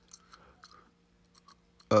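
Faint mouth noises from a man close to the microphone during a pause: small lip and tongue clicks and soft breathy sounds, ending in a short spoken 'uh'.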